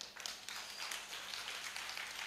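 Light, scattered clapping from a small congregation: many irregular hand claps.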